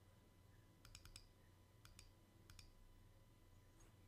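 Faint clicking: a few quick runs of two to four sharp clicks over near silence.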